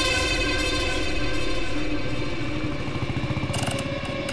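Motorcycle engine running at a steady pace under the film's background music.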